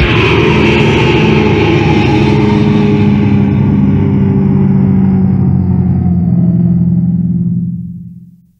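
The closing chord of a death/thrash metal song, on distorted electric guitars and bass, struck once and left to ring. It dies away slowly and fades out near the end.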